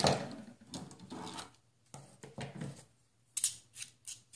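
Plastic decorative-edge craft scissors snipping and rasping through paper, with paper rustling. A few sharp clicks come near the end as the scissors are handled.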